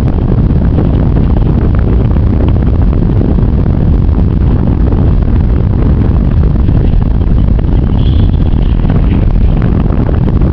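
Loud, steady wind buffeting the camera microphone, a continuous low rumble.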